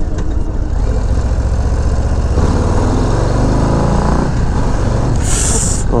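Harley-Davidson Low Rider ST's Milwaukee-Eight 117 V-twin running while riding, heard from the seat with wind on the microphone; the revs climb from about two seconds in. A short hiss comes near the end.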